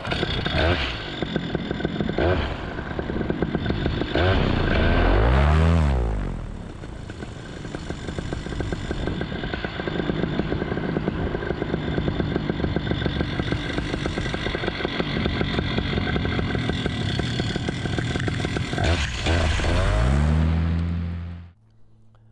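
Paramotor engine and propeller running under power for a foot launch, revving up and back down about five seconds in and again near the end. The sound cuts off suddenly just before the end.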